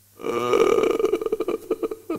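A man laughing close to the microphone: a quick run of pulsed laughs lasting about a second and a half.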